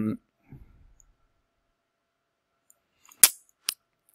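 Two sharp clicks at a computer, about half a second apart, near the end.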